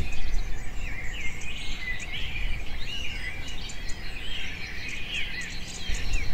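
Birds chirping: many short, quick calls overlapping one another, over a steady low background noise.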